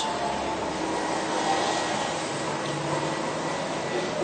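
Steady rushing background noise with a faint low hum in it, with no distinct event.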